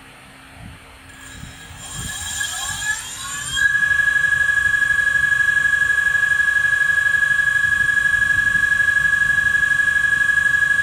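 Brushless 18-inch 48V/52V 1000W rear hub motor spinning the wheel freely in the air: about a second in its whine starts rising in pitch as it speeds up. After a few seconds it settles into a loud, steady high-pitched whine at speed.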